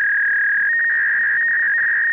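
A loud, steady electronic beep tone, one high pure pitch held throughout, with a second, slightly higher tone joining about two-thirds of a second in.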